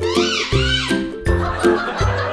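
A blue spiky rubber toy ball being squeezed, giving a quick run of high squeaky notes that rise and fall for about a second. Background music with a steady beat plays throughout.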